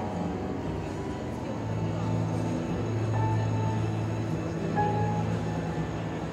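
Upright piano being played: low bass notes held from about two seconds in, with a few single higher notes above them.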